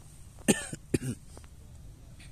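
A person coughing twice in quick succession, about half a second and about a second in.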